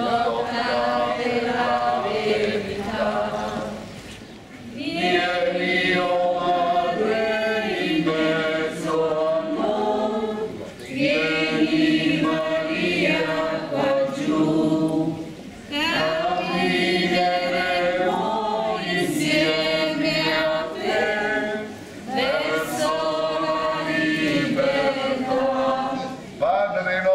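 A group of procession participants singing a Catholic hymn together in Italian, in long phrases with brief pauses for breath between them.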